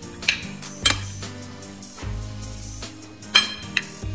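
A metal spoon clinking against a ceramic salad platter about four times as a chopped salad is tossed, the loudest clinks about a second in and near the end, over steady background music.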